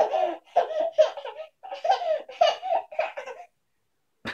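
Baby laughing in a run of about six short, high-pitched belly laughs, which stop about three and a half seconds in.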